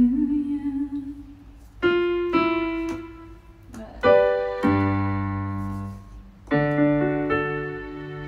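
Electronic keyboard on a piano voice playing slow, sustained chords, a new chord struck every second or two and left to ring and fade.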